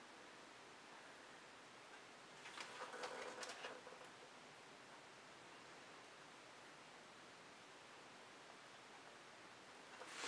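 Near silence, with a soft scraping rustle lasting about a second and a half, starting two and a half seconds in: a spatula being dragged through wet acrylic pour paint on a canvas.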